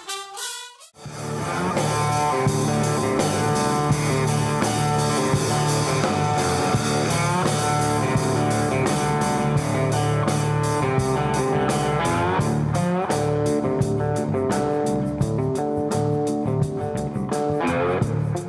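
Blues-rock band playing: an electric guitar lead line with bent notes over bass and a steady drum beat. It starts after a short break about a second in.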